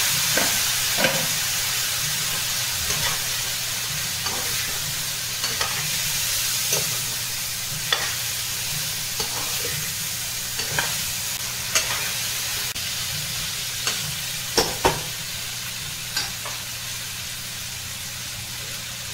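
Vegetables sizzling in a hot kadai just after water has been poured in, the hiss slowly dying down. A spatula scrapes and knocks against the pan now and then as the food is stirred.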